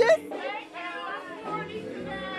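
One word shouted loudly at the start ("Precious!"), then quieter mixed talk and chatter from several people in a crowded room.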